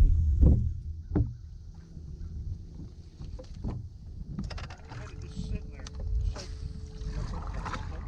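Wind and water noise aboard a bass boat, with a couple of knocks in the first second or so and scattered light clicks afterwards. A steady low hum comes in about five seconds in.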